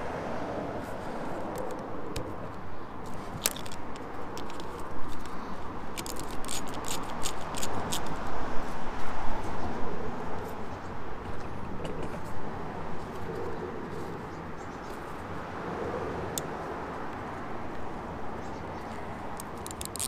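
Scattered small clicks and taps as a 7 mm socket driver turns the worm-drive hose clamp on the intake's rubber coupler, over a steady outdoor background noise.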